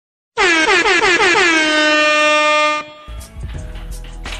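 Air-horn sound effect dropped in after a moment of dead silence: a few quick rising blasts run straight into one long held blast, which cuts off abruptly about two and a half seconds later. Quieter background music follows.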